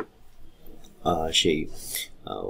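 A man speaking Bengali, starting after a pause of about a second.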